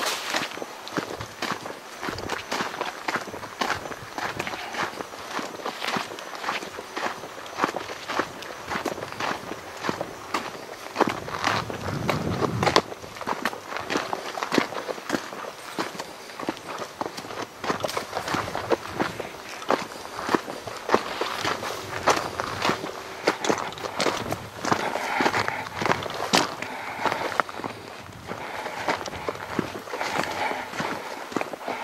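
Footsteps of a person walking at a steady pace on a dry, sandy dirt track, each step a short crunch on the grit.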